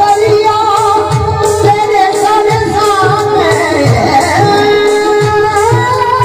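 A male singer's voice, wavering and ornamented in a Sufi folk song, over a steady harmonium drone and regular dholak drum beats.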